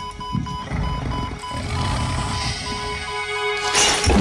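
Tense film-score music with a high beep repeating about two or three times a second over a low rumble, swelling sharply near the end.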